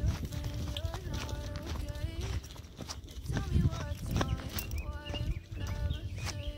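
Footsteps and dogs' paws on a stony dirt path, a patter of footfalls, under background music with a singing voice.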